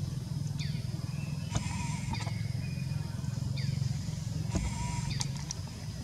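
Outdoor ambience: a steady low hum under short high chirps that slide downward, three of them about three seconds apart, with brief steady high tones between them.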